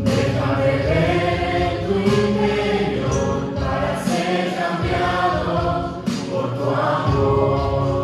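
Mixed vocal group of men and women singing a Christian worship song together in harmony into handheld microphones.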